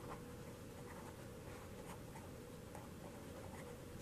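Marker pen writing on a board: faint, quiet strokes and scratches of the felt tip.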